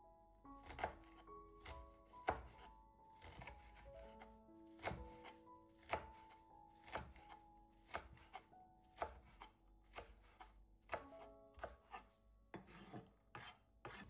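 Chef's knife chopping wild onions on a wooden cutting board: short, even knife strikes, roughly one or two a second, each a light knock through the onion onto the board.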